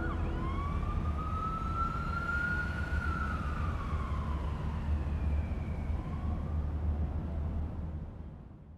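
A single long siren-like electronic wail that rises slowly for about three seconds and then falls away, over a steady low rumble.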